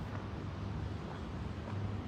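Low steady rumble of wind buffeting a handheld phone's microphone outdoors, with a few faint clicks.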